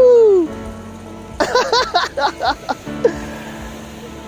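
A man's whoop falling in pitch at the start, then a run of excited laughter, at a fish just hooked.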